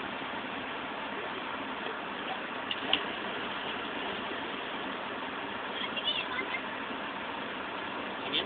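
Steady outdoor noise haze, with faint, distant shouts of girls playing in the lake water about six seconds in.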